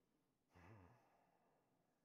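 A man's brief voiced sigh about half a second in, amid near silence.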